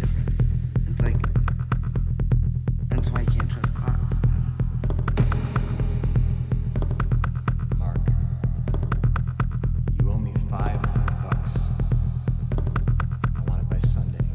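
Minimal techno track: a loud, steady deep bass line runs under fast, thin clicking percussion, with snatches of higher sampled sounds drifting in and out.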